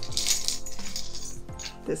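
Small metal jingle bells jingling and clinking against each other and a plastic funnel as they are tipped out of it by hand.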